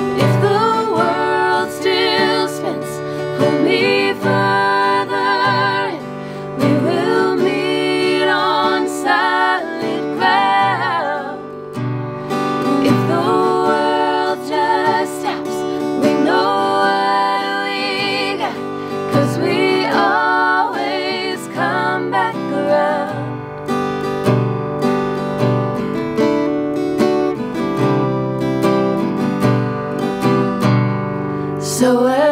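Three women singing in close vocal harmony over a strummed acoustic guitar, holding long notes with vibrato. The voices thin out in the last few seconds while the guitar keeps playing.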